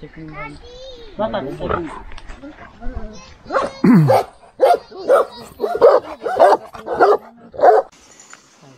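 Large Romanian shepherd dog (Ciobănesc Corb) barking in a run of loud barks, about two a second, through the second half.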